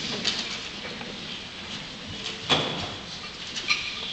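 Room sound of a school auditorium as a concert band settles before playing: a low rustle and shuffle with a few sharp clicks and knocks, the loudest about two and a half seconds in.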